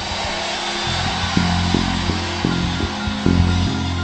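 Background music of sustained low chords that change several times, over a steady hiss.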